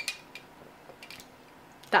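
A few light clinks of ice and a metal straw against a drinking glass, spaced apart in otherwise quiet room sound.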